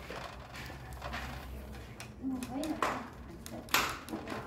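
Chopsticks stirring chopped meat into raw pig's blood in a ceramic bowl, mixing tiết canh, with soft clicks and scrapes against the bowl and two short louder scrapes near the end.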